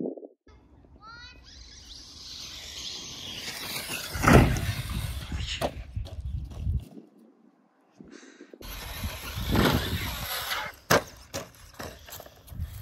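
Brushless electric motor of a Traxxas Stampede 4x4 VXL RC truck on a three-cell battery, whining up as it runs at the jump, with rushing noise and a loud hit about four seconds in. After a brief gap comes more rushing with a high whine and sharp clatters as the truck lands and tumbles on grass.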